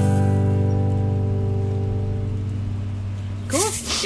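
Final chord of acoustic guitars and electric bass ringing out and slowly fading, the bass note stopping just before the end. A short burst of laughter comes in near the end.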